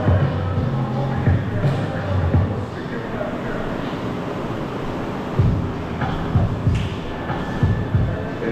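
Hip-hop music with a heavy, pulsing bass beat that thins out for a few seconds in the middle.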